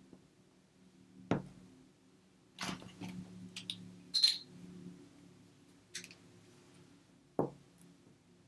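Small craft gems and paper pieces handled on a cutting mat: a few light, scattered taps and clicks as gems are picked up and set in place, the loudest about four seconds in, over a faint steady hum.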